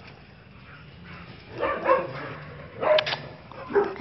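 Dog giving a few short, high yips and whines: one about two seconds in, a sharper one about three seconds in, and another near the end.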